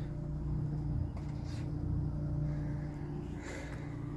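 Minn Kota electric trolling motor running steadily under way, a low even hum.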